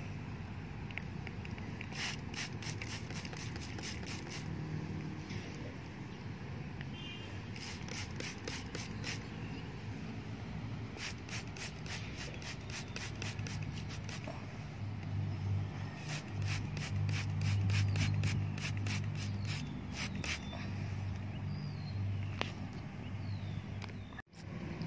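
Hand trigger spray bottle squeezed in four quick runs of about four pumps a second, each pump a short hiss of spray onto plant leaves. A steady low hum runs underneath and grows louder in the second half.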